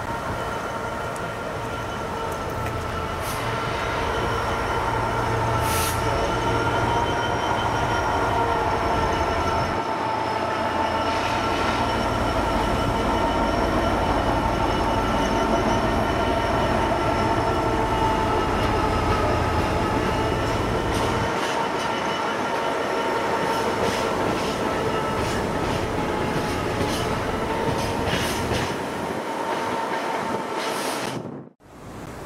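Class 66 diesel-electric locomotive passing with its two-stroke diesel engine running, joined by steady, high-pitched wheel squeal from the rails. The low engine drone drops away about two-thirds of the way through, while the squeal carries on, with a few clicks from the rail joints.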